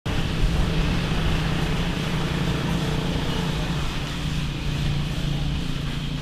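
An engine running steadily with a low, even hum, over a constant outdoor background noise.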